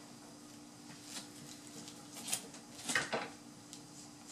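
A few light knocks and rubs as a glass pane in its collar frame is set down and lined up on top of a case, the loudest about three seconds in, over a steady low hum.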